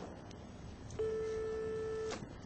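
Public payphone's line tone: one steady, single-pitched beep of about a second through the handset, starting halfway in, after a few faint clicks.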